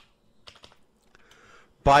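A few faint computer keyboard keystrokes as a number is typed in.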